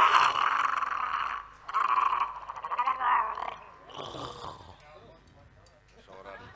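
A wayang golek puppeteer's voice giving a rough, raspy growl for an ogre puppet, without words, in four bursts: the first the longest and loudest, the last faint, about four seconds in.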